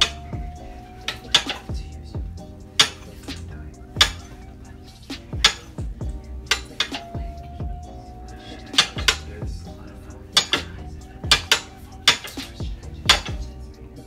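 Chef's knives slicing zucchini and yellow squash, each cut ending in a sharp knock of the blade on the counter, at an irregular pace of about one a second. Soft background music runs underneath.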